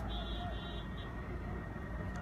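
Parked fire engines running with a steady low rumble, with a short run of high-pitched beeps in the first second.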